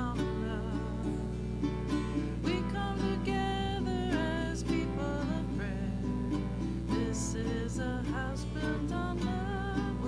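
A live song: a singing voice with acoustic guitar accompaniment, plucked and strummed.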